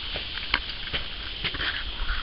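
Faint rustling and scattered light clicks from a handheld camera being moved, with one sharper click about half a second in, over low steady background noise.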